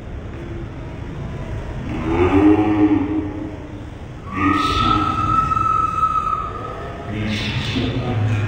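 A man's voice calling out in bursts, with a steady high tone held for about two seconds from about halfway through.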